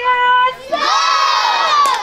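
A group of young children shouting a chant together, loud and high-pitched, starting about a second in. It is preceded by one voice holding a single steady note.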